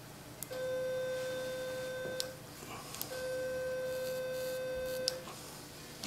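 Activation tone of an Ellman radiofrequency surgery unit: a steady mid-pitched beep sounds twice, each time for about two seconds, with a click as it starts and stops. The tone signals that the pin electrode is energised and cutting tissue.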